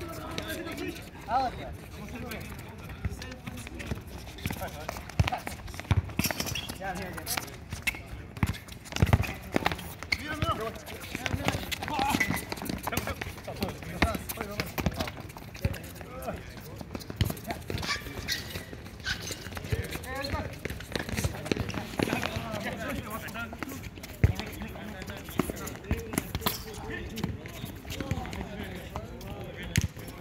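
Players' voices calling out over sharp thuds of a soccer ball being kicked and bouncing on a hard court, with scuffing footsteps of running players; the loudest thuds come about nine seconds in and again near twenty-four seconds.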